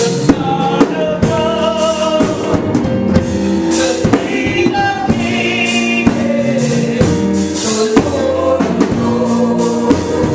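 Gospel song with singing voices over a drum kit and other instruments, the drums keeping a steady beat of about one strong hit a second.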